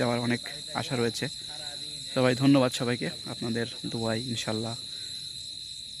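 Crickets calling in a steady, continuous high-pitched trill, with a person talking over them until about five seconds in.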